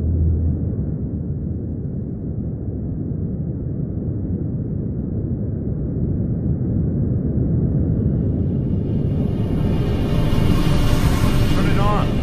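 Deep, rumbling sound-design bed of a title sequence, low and noisy. It swells and grows brighter from about two-thirds of the way in, with a few short gliding sounds at the very end.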